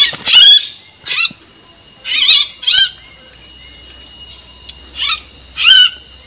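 A bird calling loudly close by: about seven short chirping calls with sliding pitch, some in quick pairs, the last pair near the end. A steady high insect drone runs underneath.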